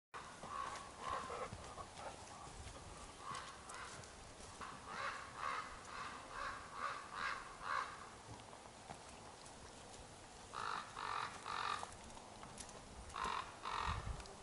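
A bird calling in runs of short, evenly spaced calls: a few at the start, a run of about seven in the middle, then three and finally two near the end.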